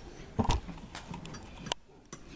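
Sharp metal clicks and knocks of a key bunch against a padlock as the key is worked into it, the loudest about half a second in, with smaller clicks near one second and near the end.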